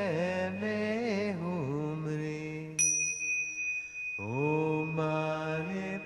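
Music: a low voice chanting in long held notes that slide between pitches. A bell is struck once about three seconds in and rings on over the voice.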